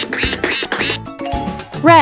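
Children's background music with a quick run of cartoon duck quacks in the first second, then a loud sound effect that falls in pitch near the end.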